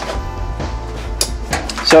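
Background music, with a few light clicks in the second half as an old plastic foglight unit is picked up and handled.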